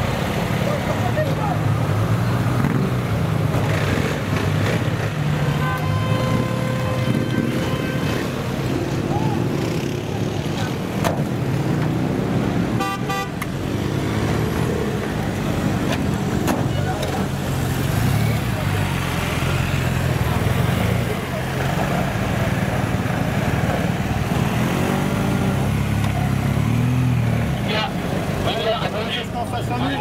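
Engines of police motorcycles and vans running in city street traffic, a steady low rumble throughout. A vehicle horn is held for about two seconds some six seconds in, and voices are heard now and then.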